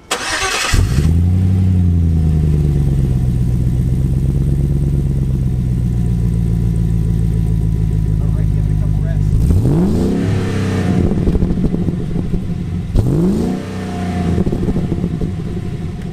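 Land Rover Discovery 2's swapped-in engine, heard close at the exhaust tip, starting up: a short burst of cranking, then it catches about a second in and settles to a steady idle. It is blipped twice, the pitch sweeping up and back down, once near ten seconds and again about three seconds later.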